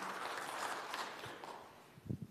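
Congregation applauding, the clapping thinning out and dying away near the end.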